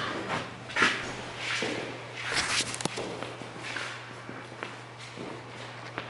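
Footsteps and clothing rustle: a few soft swishes and shuffles, with one sharp click about halfway through, over a low steady hum.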